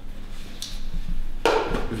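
A faint click, then about one and a half seconds in a single sharp clunk with a short ring: a turbocharger being set down on a hard floor.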